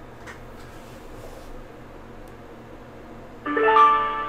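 A call into the ShoreTel voicemail system connecting: a low line hiss, then about three and a half seconds in a short chime of several held tones that rings on and fades, as the system answers.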